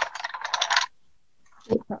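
Coloured pencils clicking and rattling against one another in a tray as it is moved, a quick scatter of light clicks in the first second. This is followed by a couple of short knocks near the end.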